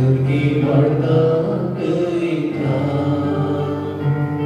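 A slow, meditative Taizé chant sung by voices, with long held notes moving slowly from pitch to pitch.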